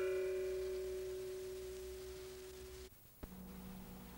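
A single bell-like chime, struck once, ringing with a clear low tone and fainter higher overtones and slowly fading, then cut off abruptly about three seconds in. A faint steady hum follows.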